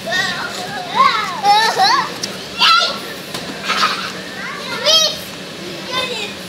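Young children's high-pitched shouts and squeals at play, with several loud cries in a row.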